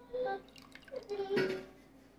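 Metal tongs knocking against a stainless saucepan, with broth dripping, as wet sliced beef is lifted out of hot gravy. There is a sharper clink about one and a half seconds in.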